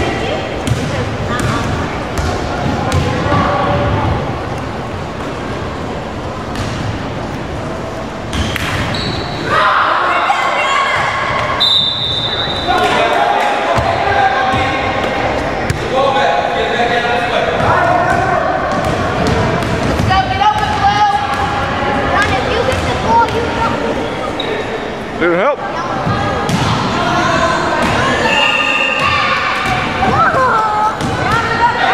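Basketball bouncing on a hardwood gym floor during play, with voices calling and chattering in the echoing gym.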